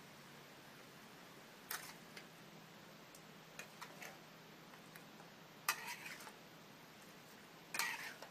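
Stir-frying water spinach in a steel wok: short metal clacks and scrapes of the spatula against the wok, in four brief clusters about two seconds apart, over a faint steady hum.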